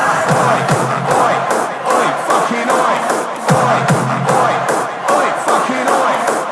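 Dance music with a steady beat, mixed with a crowd shouting and cheering.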